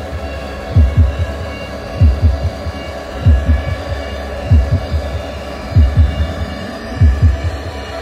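Background music: a slow, heartbeat-like pulse of paired deep drum thumps about every second and a quarter, over steady held synth tones.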